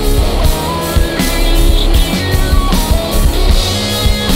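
Psychedelic stoner rock played by a full band: fuzz-distorted electric guitars and bass over a drum kit keeping a steady beat.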